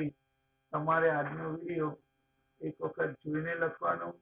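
A man's voice speaking in two short phrases separated by brief silences, over a faint steady electrical hum.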